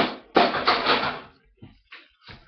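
Plastic hamster tube being handled: a sharp knock, then about a second of rubbing and scraping against the plastic.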